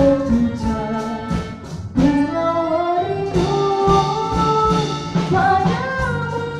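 A woman singing a song into a microphone over a live band of acoustic guitars and drum kit, with a steady drum beat; a new sung phrase begins about two seconds in.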